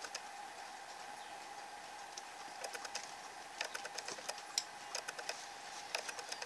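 Faint scattered clicks and light taps of a paintbrush and tissue paper being worked onto a journal page, over a steady faint hum. The clicks come thicker in the middle stretch.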